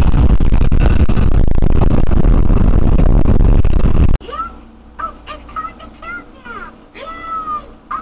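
Loud, steady road and wind noise of a car driving on a highway, heard from inside the car, which cuts off suddenly about four seconds in. Then quieter short, high calls that rise and fall, played from a television.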